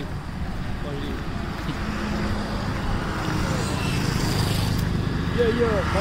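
Steady low outdoor rumble that grows a little louder toward the end, with faint voices about five seconds in.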